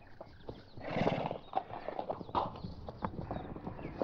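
Hoofbeats of horses being ridden at a walk: an irregular clip-clop of hooves, with a louder burst of sound about a second in.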